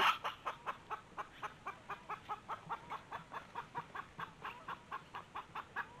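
Chickens clucking in a quick, steady series of short clucks, about five a second.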